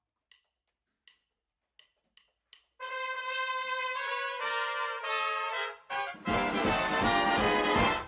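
Five sharp clicks count in. About three seconds in, a big band's brass section enters with sustained chords, and the whole band comes in about six seconds in.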